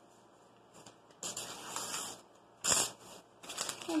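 Paper being crumpled by hand into a small wad: a stretch of crinkling about a second in, a short sharper crinkle in the middle, and more crinkling near the end.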